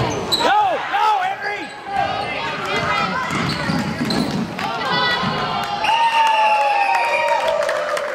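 A basketball bouncing on a hardwood gym floor during a youth game, mixed with shouts and calls from players and spectators. Near the end there is one long, high-pitched held call.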